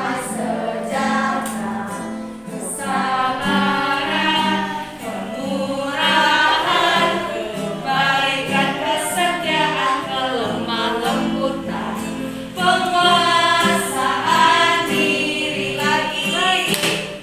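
A group of children and women singing a Christian song in Indonesian together, with an acoustic guitar strumming along.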